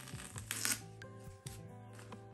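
Soft background music, with tape being peeled slowly off paper: a short noisy peel about half a second in.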